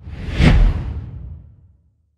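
Logo-sting sound effect: a swooshing whoosh over a deep low boom, swelling to a peak about half a second in and then fading away over the next second.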